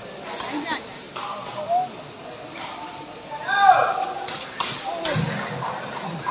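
Sepak takraw ball being kicked back and forth in a rally, several sharp thuds echoing in a large hall, with short shouts from players and crowd between the kicks.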